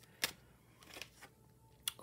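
Tarot cards being handled as one is drawn from the deck: a few small clicks and taps of card and fingernail, the sharpest about a quarter second in and just before the end.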